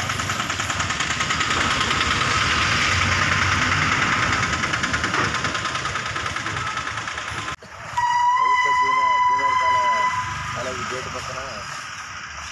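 A motor engine running with a fast, even pulse, which cuts off abruptly about seven and a half seconds in. A steady pitched tone with overtones follows, held for about two seconds, with voices underneath.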